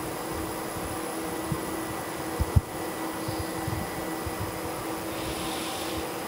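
Steady whirring ventilation noise with a constant low hum, with two soft low thumps in the first half.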